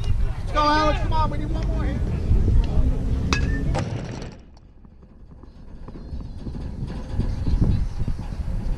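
Unclear voices over a low rumble. A single sharp click comes a little over three seconds in, then the sound drops quieter for a couple of seconds before the rumble returns.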